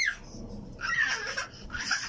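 A toddler's high-pitched squeals and laughter: a falling squeal at the start, then short bursts about a second in and again near the end.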